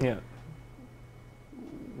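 A man says a short "yeah", then a pause of room tone with a steady low hum and a faint high tone. Just before speech resumes, a brief low voiced murmur.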